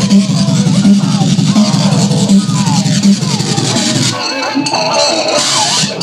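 Circuit-bent electronic toys played through an effects pedal, making glitchy electronic noise music. A low buzzing throb repeats about every three quarters of a second under warbling, sliding tones. About four seconds in, the throb stops and high, glitchy bleeps and pitch slides take over.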